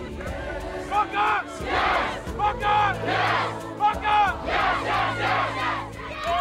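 A group of children and men shouting and chanting together in loud, repeated bursts, the high young voices rising and falling.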